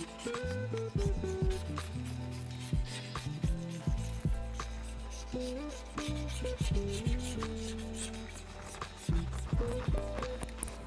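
Razor blade scraper rubbing and scraping across wet window glass, lifting leftover tint adhesive, over background music with a bass line.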